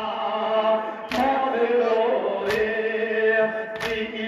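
Men chanting a Shia nauha (Urdu lament) through microphones, with a group's chest-beating matam strikes landing together about every second and a half, three times.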